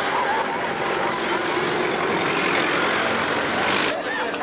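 A steady motor-vehicle engine running nearby, under a crowd talking, cut off abruptly near the end.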